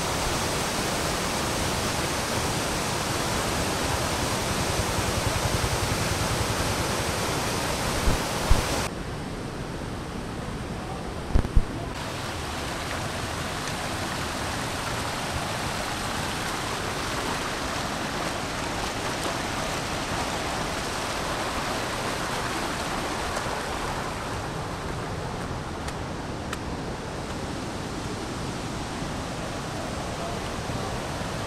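Steady rush of muddy floodwater pouring down a swollen stream and river, an even noisy wash of sound. A few dull thumps come about a third of the way in, where the hiss briefly thins out.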